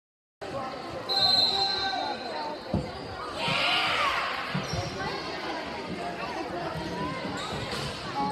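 Indoor volleyball play in a gym: a short high whistle, then the ball struck sharply a little under three seconds in, a burst of crowd yelling, and a further hit about a second and a half later, over the constant chatter of spectators. The sound cuts out briefly at the very start.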